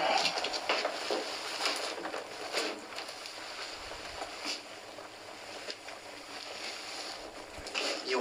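Rustling with scattered light knocks and clicks, like things being handled.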